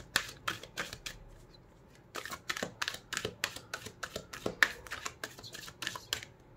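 A deck of large oracle cards shuffled by hand: a quick run of sharp card snaps, a short lull about a second in, then a denser run of snaps.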